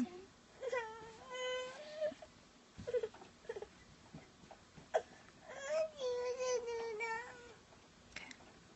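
A cat meowing twice in long, drawn-out calls: the first about a second in and the second in the last third, each held at a fairly steady pitch with a small rise at the start or end. There are a few short clicks between the calls.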